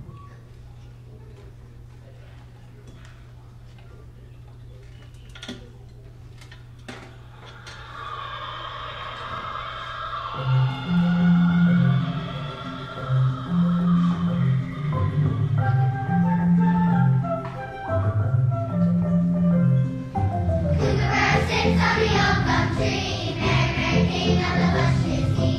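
A steady low hum for the first seven seconds. About eight seconds in, a recorded kookaburra's laughing call plays on the song's backing track, followed by an instrumental intro over a repeating bass line. A children's choir starts singing about 21 seconds in.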